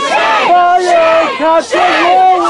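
Crowd of protesters chanting loudly in unison, the phrase repeating in a steady rhythm.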